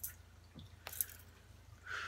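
Faint clicks and taps of cards being handled on a table, with a thin high-pitched tone starting near the end.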